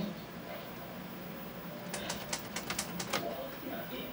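Screen (service) switch on a 1969 Sylvania tube colour TV being flipped and worked: a quick run of sharp clicks about two to three seconds in, over a faint steady hum. The repairer suspects a dirty screen switch.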